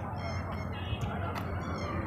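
Steady, faint background noise with no distinct event: the hiss and ambience of the voice-over recording between spoken items.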